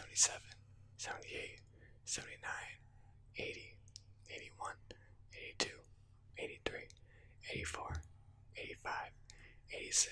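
A man whispering close to the microphone, counting numbers at a steady pace of about one a second.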